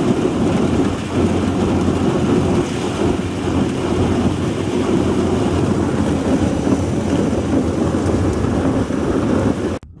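Airboat running at speed across a frozen lake, a loud steady rush of propeller and hull noise mixed with the hull crunching and breaking through thin ice. It cuts off suddenly near the end.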